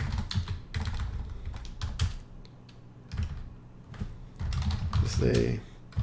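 Typing on a computer keyboard: uneven bursts of key clicks as terminal commands are entered, with a short lull about two seconds in.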